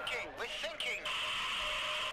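Radio static hissing over a radio set, with a voice coming through briefly in the first second; a second burst of static starts about a second in.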